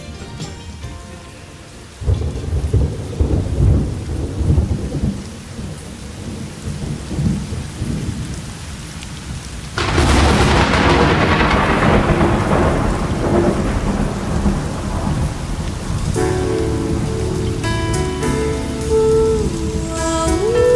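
Thunderstorm recording: rain with rolling thunder that begins about two seconds in, and a sharp, loud thunderclap about halfway through that slowly dies away. Music with steady sustained tones fades in near the end.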